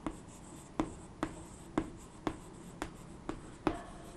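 Chalk writing on a chalkboard: a run of sharp taps and short scrapes, about two a second, as letters are written.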